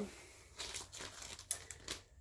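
Plastic wax-melt packaging crinkling as it is handled, a few irregular short crackles.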